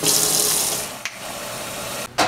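Kitchen faucet running into a stainless-steel sink and then into a metal saucepan being filled with water. A brief click comes about halfway through, after which the running water is quieter.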